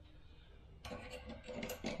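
Quiet at first, then from about a second in a run of light clicks, clinks and rustles as small hand tools and faucet parts are handled.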